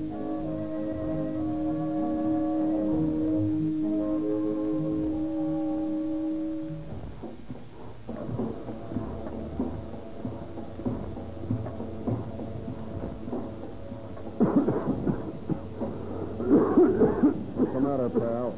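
A small band of wind and string instruments plays sustained chords, heard on a 1930s radio broadcast recording, and breaks off about seven seconds in. A rougher, choppy stretch follows, with louder bursts near the end.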